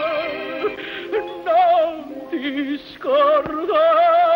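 Operatic tenor singing a slow melody in long held notes with wide vibrato, accompanied by a string orchestra. The voice drops away briefly about three seconds in, then takes up a new held note.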